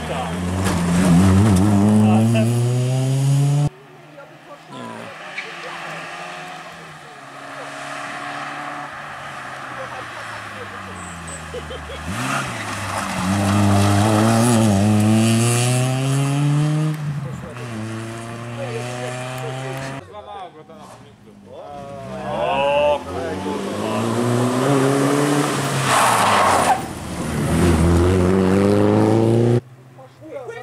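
Rally cars driven hard on a tarmac stage, engines revving up through the gears with the pitch climbing and dropping back at each shift: first an Opel Astra GSi 16V, then, from about two-thirds in, a BMW E21 320.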